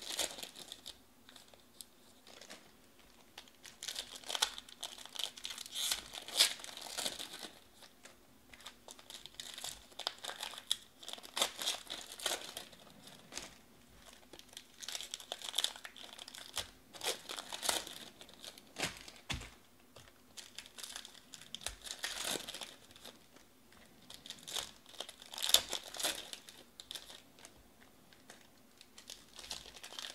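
Foil trading-card pack wrappers crinkling and tearing as they are peeled open by hand, in repeated short bursts every few seconds.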